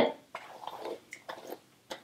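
A hand-pumped spray bottle spritzing water onto hair to dampen it: a short, faint hiss of spray followed by a few soft clicks and rustles of the hair being handled.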